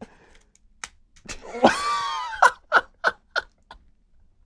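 Men laughing hard: a long, high laugh about one and a half seconds in, followed by a string of short bursts of laughter that die away near the end.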